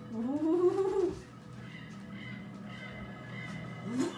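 A woman's drawn-out squeal, rising then falling in pitch, lasting about a second at the start, a nervous reaction as she touches an unseen object.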